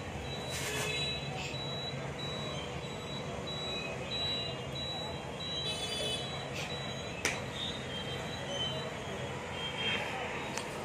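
Steady low background hum with an intermittent high, thin chirp or beep that repeats in short dashes, and one sharp snap about seven seconds in.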